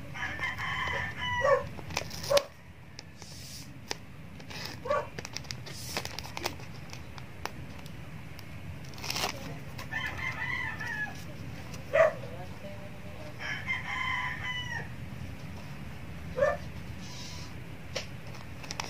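A rooster crowing three times in the background: once at the start, once about ten seconds in and once near fourteen seconds. Light clicks and rustles of ribbon and tape being handled come in between the crows.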